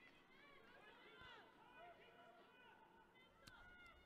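Near silence with faint, distant shouted calls of voices from the pitch, short and rising and falling in pitch, and a faint click late on.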